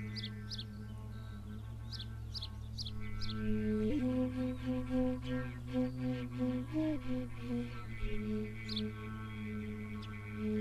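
A low steady drone under a slow, low-pitched melody on a long end-blown flute, which enters about three and a half seconds in and moves in held notes with small steps in pitch. Birds chirp briefly a few times.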